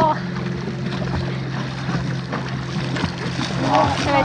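A boat engine idling close by, a steady low hum.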